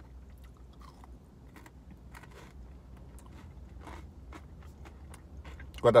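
A person biting and chewing a Kit Kat Rosa wafer bar with a melted ruby chocolate coating: faint, scattered crunches of the wafer.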